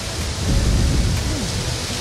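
Low rumble on a handheld microphone over a steady outdoor hiss, swelling about half a second in and easing off after a second.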